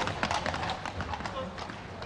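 Shod hooves of a police horse clip-clopping on paving slabs at a walk, a string of sharp clicks, with men's voices calling out.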